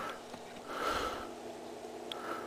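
A man's soft breaths through the nose: one trailing off at the start and a longer one about a second in, over a faint steady hum.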